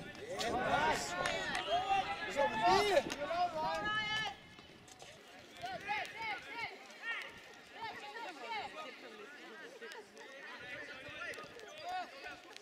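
People shouting and calling out across a football pitch, loud and overlapping for the first four seconds, then dropping suddenly to fainter, scattered calls.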